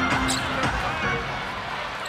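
Basketball arena sound during live play: crowd murmur and court noise from the game on the hardwood, with faint background music that stops about two-thirds of a second in.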